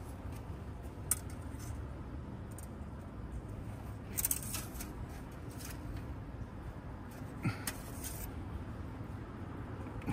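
A cloth rag rubbing and dabbing over a diesel engine's oily surfaces, heard as a few short rustles and clicks. A steady low rumble runs underneath.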